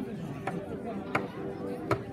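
Sharp knocks at a steady pace, about one every three-quarters of a second, three in all, the later two loudest. Underneath are steady held musical tones and background voices.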